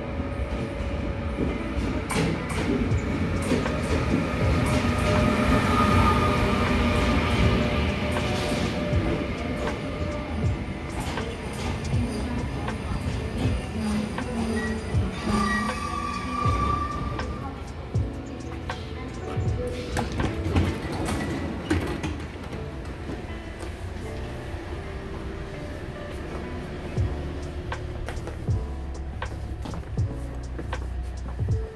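Passenger train pulling into a station platform and rolling past, loudest a few seconds in. A short high squeal comes about halfway through as it slows. Background music plays underneath.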